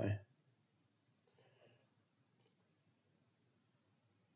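Quiet clicks of a computer mouse: a quick double click just over a second in and another click about a second later.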